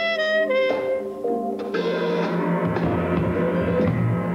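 Big band jazz: a trumpet plays a line of held notes over drum kit, and the fuller band with cymbals comes in about two seconds in.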